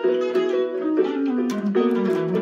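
A small plucked string instrument playing a melody of quick picked notes in the mid and high register, with no bass.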